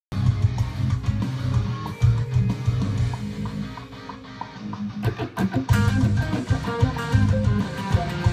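Heavily distorted Carvin DC600 electric guitar, through a Fractal Audio Axe-Fx Ultra, playing a djent metal solo section. It plays low, stop-start chugging, eases off around four seconds, then plays fast lead notes from about five seconds in.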